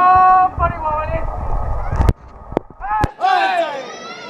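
Men's loud shouted calls, then a single sharp, loud knock about two seconds in, followed by two lighter knocks and more shouting.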